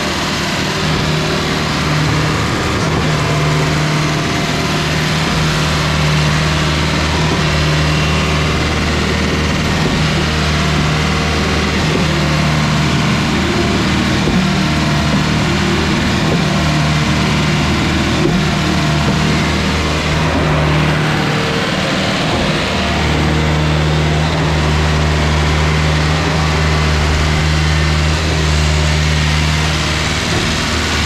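Putzmeister TK70 trailer concrete pump running steadily through a water pressure test: a diesel engine's steady drone with water splashing and churning in the hopper. The low engine note drops away briefly about two-thirds of the way through.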